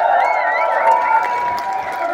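A concert crowd cheering and clapping, with a high, wavering whistle-like tone held over it.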